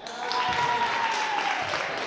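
Gym crowd cheering and clapping just after a free-throw attempt, with one voice held in a long call that slowly falls in pitch.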